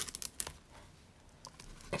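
Plastic zipper on a clear vinyl cash envelope being run, a faint quick series of small ticks near the start, then one more tick about a second and a half in.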